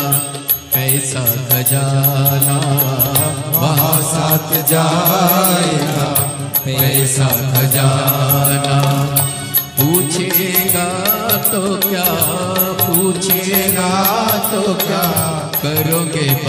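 Hindu devotional bhajan music to Shiva: a wavering melodic line over a steady low drone, with a regular percussion beat throughout.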